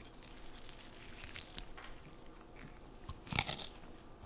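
Close-up crunching and chewing of crispy breaded fried chicken, with a louder crunch near the end.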